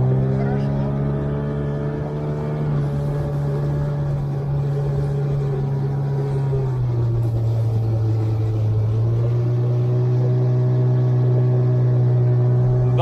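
Motor of an inflatable motor raft running under way at a steady note, which rises slightly a few seconds in, drops about seven seconds in and climbs back a couple of seconds later as the raft is put through turns.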